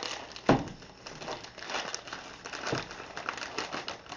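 A plastic mailer bag crinkling and rustling as it is handled and pulled open by hand. There is a sharp crack about half a second in, followed by continued crackly rustling.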